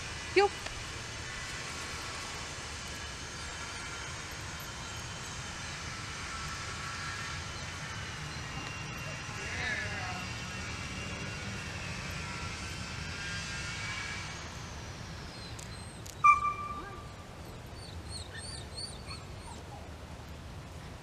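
Distant aircraft engine drone: several steady high tones over a low hum, sliding a little lower in pitch and fading about three-quarters of the way through. Shortly after, a single short, loud high-pitched chirp, then a few faint high chirps near the end.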